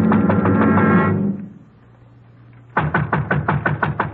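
A short orchestral music sting with drum beats, cutting off about a second in. After a brief pause comes a rapid run of about ten loud knocks, about seven a second: a fist pounding on a door, as a radio-drama sound effect.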